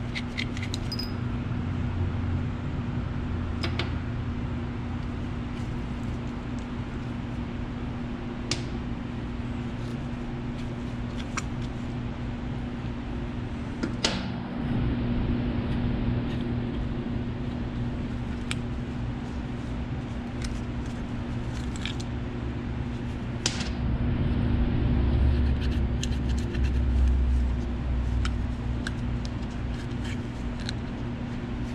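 Scattered light metal clicks and taps as the parts of a power steering control valve are unscrewed and worked loose by hand, over a steady low hum.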